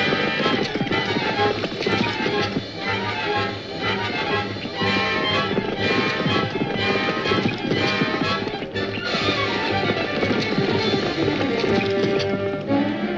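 A single horse galloping, its hoofbeats beating fast under dramatic western film-score music; about nine seconds in the music makes a falling run.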